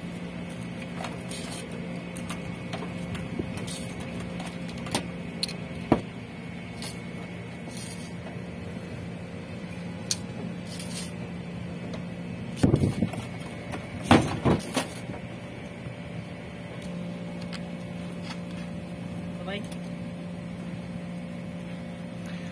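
Light metal clicks and taps from hand tools being worked on copper refrigerant pipe at an air-conditioner outdoor unit's service valves, with a few louder clanks about two-thirds of the way through. Under it is a steady mechanical hum.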